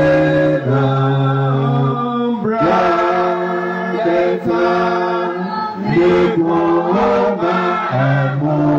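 Church congregation singing a hymn together with no instruments, in harmony, on long held notes that change every second or so.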